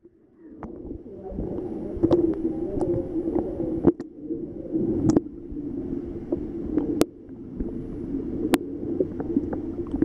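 Muffled underwater sound picked up by a submerged camera: a steady low hum and gurgle with scattered small clicks and crackles, and two sharp ticks about seven and eight and a half seconds in. The sound fades in during the first second.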